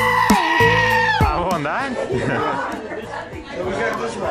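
A goat yelling with a loud, human-like scream, one long held call of about a second and a half that drops sharply in pitch at the end.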